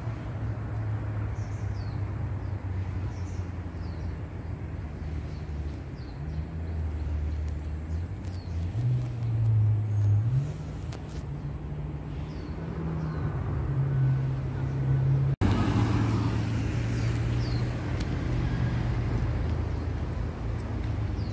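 A vehicle engine running with a low hum that steps up and down in pitch as its speed changes, with birds chirping over it. The sound cuts off abruptly about fifteen seconds in and carries on after the cut.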